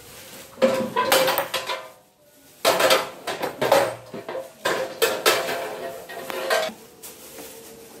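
Steel legs and frame bars of an overlock sewing-machine stand clanking and rattling as they are handled and set down on a tiled floor, in three bursts of metallic clatter with a ringing tone.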